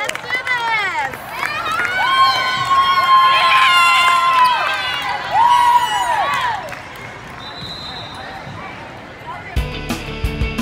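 High-pitched voices shouting and cheering in a gym, with long drawn-out yells and short whooping shouts, as a volleyball team is introduced and huddles. The voices die down to quieter crowd noise, and rock music cuts in near the end.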